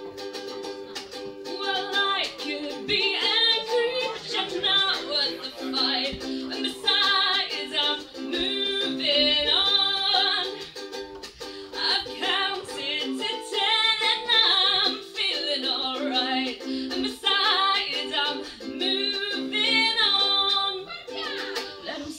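Ukulele strummed in steady chords, with a woman's voice singing a melody over it, live in a small room.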